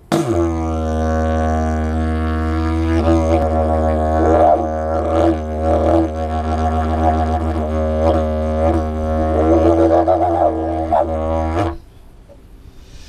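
Didgeridoo played as a steady low drone, its upper overtones shifting and swelling as the player changes mouth shape, with a few sharper accents. It starts abruptly and stops shortly before the end.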